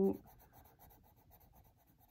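Coloured pencil shading on paper: faint, quick back-and-forth strokes, about six a second.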